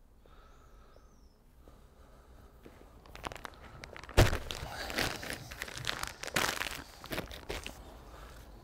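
Plastic compost bag crinkling and rustling as it is handled, starting about three seconds in, with a single heavier thump about four seconds in.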